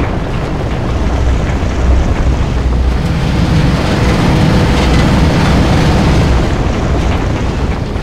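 Steady, loud rumbling and rushing noise, heaviest in the low end and swelling a little in the middle: the sound effect for stone aggregate tumbling through the burner-heated drying drum of an asphalt mixing plant.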